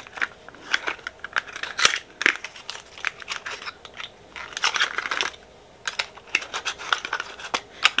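Small cardboard product box being handled and opened by hand: scattered sharp clicks and taps with short papery rustles, the longest rustle about five seconds in.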